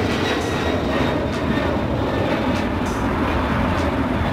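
Jet engines of a twin-engine widebody cargo jet climbing out after takeoff: a steady rush of noise with a deep rumble under it and a faint whine that falls slowly in pitch.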